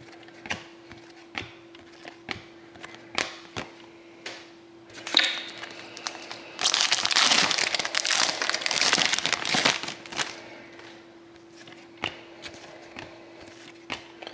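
Trading cards flicked through by hand with light clicks, then a card pack's wrapper torn open and crinkling loudly for about three seconds, followed by a few more card flicks. A faint steady hum runs underneath.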